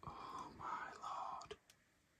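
A man whispering faintly, two short breathy phrases, followed by a light click.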